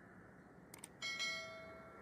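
Subscribe-button animation sound effect: two quick clicks, then about a second in a notification bell chime rings out and slowly fades.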